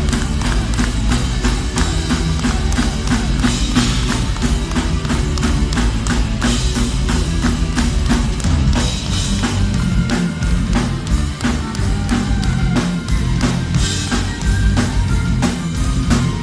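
A live symphonic power metal band playing loud and fast: rapid, steady drumming with a driving kick drum under distorted electric guitars and bass. It is heavy in the low end, as captured from the crowd.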